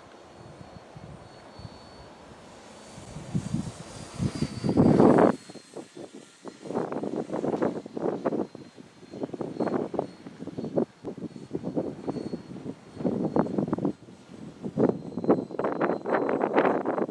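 Strong wind buffeting the microphone in irregular gusts, loudest about five seconds in. Underneath is a faint, steady high whine from the distant electric brushless motor of a radio-controlled gyrocopter.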